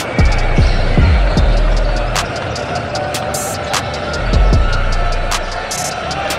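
A basketball dribbled and bouncing on a hardwood court, giving a run of sharp irregular knocks, over steady arena crowd noise.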